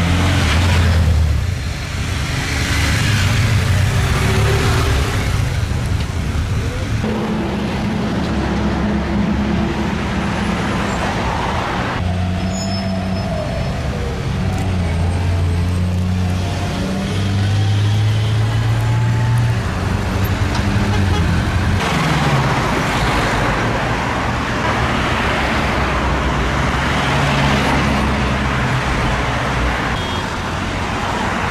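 City road traffic: motorcycle and car engines running past, with a steady low engine hum whose pitch shifts. The sound changes abruptly a few times.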